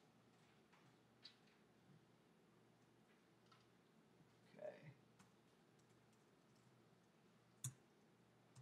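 Near silence with a few faint clicks from a laptop computer being handled at a table. There is a small click just over a second in, a soft knock about halfway, and a sharper click near the end.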